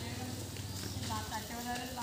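Background voices of people talking, with a steady low hum underneath.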